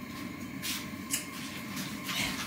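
Low room noise with a couple of brief rustling sounds, about a third and halfway in, from someone handling things and moving about in a small room.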